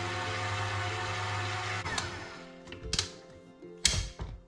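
Electric stand mixer with a dough hook kneading wet bread dough at medium speed: a steady motor whir with a low hum that stops about two seconds in. A few sharp clicks and knocks follow as the bowl is handled.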